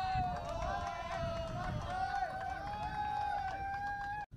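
A person's voice holding one long call on a steady pitch, with a slight break about two seconds in, over short chirping sounds.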